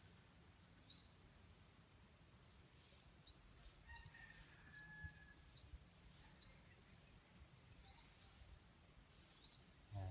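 Near silence: faint outdoor ambience with small birds giving many short, high chirps.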